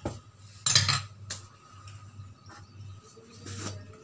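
Kitchen utensils and containers being handled on a countertop: a loud clatter about a second in, a lighter tap just after, and a softer one near the end.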